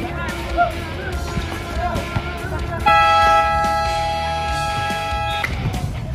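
A steady two-tone horn blast lasting about two and a half seconds, starting about three seconds in and cutting off sharply, over background music and voices.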